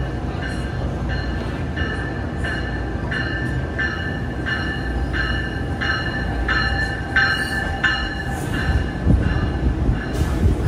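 NJ Transit multilevel push-pull train arriving at a station platform, cab car first, with low wheel and motor rumble. A bell rings steadily about one and a half strikes a second as it comes in, and wheel clacks and knocks rise near the end as the cars roll past close by.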